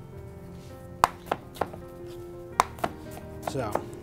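Chef's knife chopping green bell pepper on a plastic cutting board: three sharp knocks about a third of a second apart, the first the loudest, then a pause and two more knocks.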